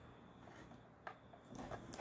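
Near silence, with one faint sharp click about a second in: a plastic retaining tab on a Ford Falcon BA/BF wing mirror's coloured back cover snapping free.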